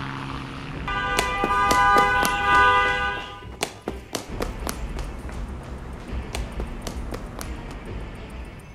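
A car horn sounds continuously for about two and a half seconds, followed by quick running footsteps slapping on pavement. Footstep clicks also run under the horn.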